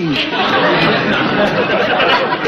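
Studio audience laughing, a dense crowd of laughter.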